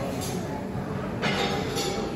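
Busy dining-room ambience: a steady rumbling din with indistinct background voices.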